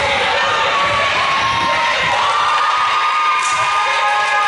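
Gym crowd of spectators and young players cheering and shouting over one another, a steady mass of voices.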